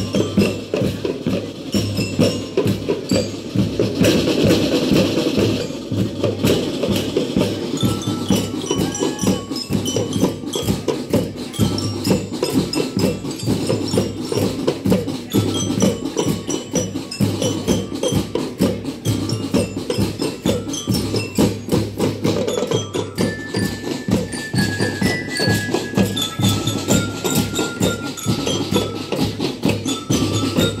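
A marching drum band playing: a dense, fast rhythm on snare, tenor and bass drums, with short, high, ringing melody notes on top. A few longer held notes join in the second half.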